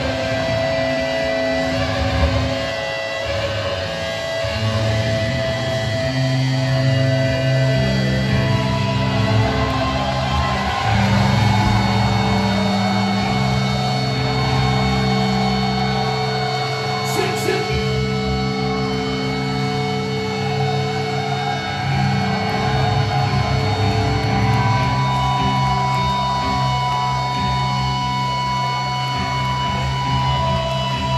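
A metalcore band playing live, heard from the crowd: loud distorted electric guitars and bass holding long, sustained notes.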